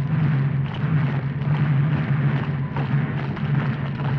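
Film soundtrack sound effects: a loud, continuous low rumble with rough noise over it.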